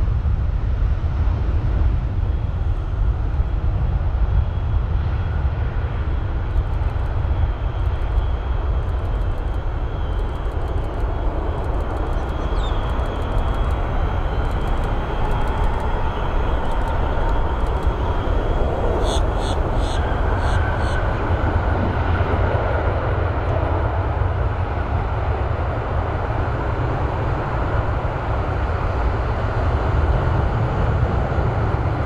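Airbus A330-300's Rolls-Royce Trent 700 engines at takeoff thrust through the takeoff roll and climb-out: a steady, loud deep rumble. Faint rising tones sit in it in the second half, and a run of sharp clicks comes midway.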